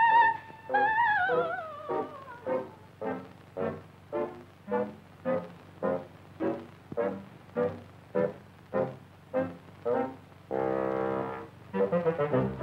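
Orchestral cartoon score: a high wavering melody note ends about two seconds in. A run of short, evenly spaced staccato notes follows, about two a second, and a held brass chord sounds near the end.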